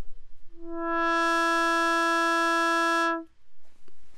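Eurorack synthesizer drone from a Graphic VCO patched through a Z2040: one steady pitched tone with a rich stack of harmonics. It swells in about half a second in, brightens as its upper harmonics fill in over the next half second, holds level, and cuts off suddenly a little after three seconds.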